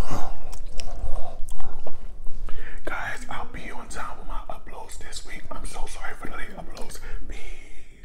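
Close-miked chewing of a mouthful of corn, with wet lip smacks and mouth clicks throughout.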